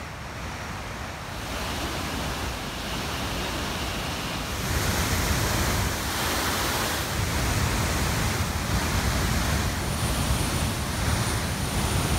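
Steady rush of a waterfall and the fast white-water river below it, a little louder from about five seconds in.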